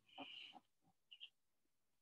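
Near silence: quiet room tone with a faint brief noise near the start and two tiny ticks about a second in.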